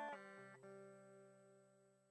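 Guitar music ending: a last note or two is plucked and left to ring, fading away over about a second into near silence.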